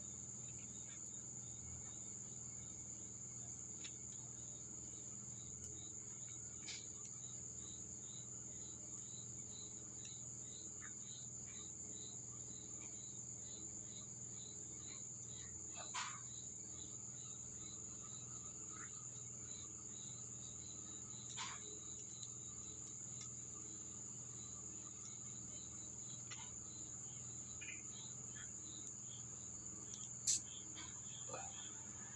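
Night insects: crickets giving a steady high trill, with a slower, evenly pulsed chirping over it through the middle stretch. A couple of brief faint clicks come about halfway through and again a few seconds later.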